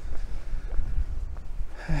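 Wind buffeting a clip-on wireless microphone, a steady low rumble, with the wearer's breathing and faint scuffs from walking; a breath swells near the end.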